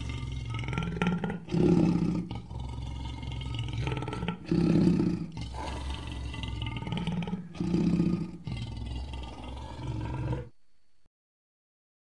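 Custom-made Tyrannosaurus rex roar sound effect: low rumbling roars that swell loud about every three seconds over a steady low rumble. It cuts off suddenly about two-thirds of a second before the last second and a half, leaving silence.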